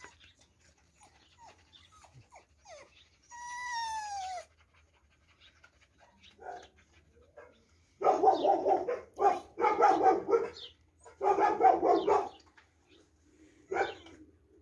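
A dog whines once, drawn out and slightly falling in pitch, about three seconds in. From about eight seconds in, dogs bark in three loud runs of a second or so each, with a short last bark near the end.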